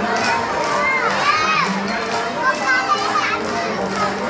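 Upbeat dance music playing over a loudspeaker, with young children's high voices shouting and calling out over it, loudest a little past one second in.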